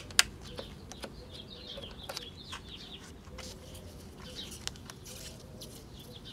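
Two sharp clicks as the volume knob's power switch on a GE P925 transistor radio is turned, then nothing from the radio: it is dead and silent. Faint birds chirp in the background.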